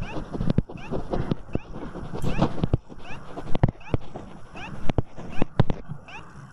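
Pen stylus writing on a tablet: a run of irregular sharp taps with short scratchy strokes between them.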